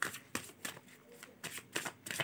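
A deck of tarot cards being shuffled by hand: a quick, irregular run of short card clicks and flutters.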